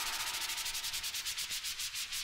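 Electronic transition effect at the end of a disco track: a quiet, rapid train of hissing noise pulses that gradually slows down and fades.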